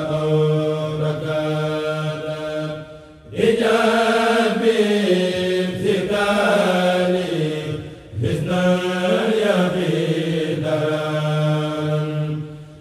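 Male voices chanting an Arabic khassida (a Mouride devotional poem) in long held, melismatic notes. The chant breaks briefly for breath about three seconds in and again about eight seconds in, then carries on.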